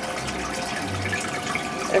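Steady running and splashing of water from an aquarium's filter or water circulation, a continuous trickle with a faint steady hum beneath it.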